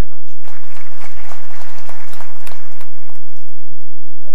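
Audience applauding, beginning about half a second in and dying away near the end.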